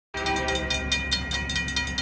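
Railroad crossing bell ringing rapidly, about six strikes a second, while a locomotive's horn sounds.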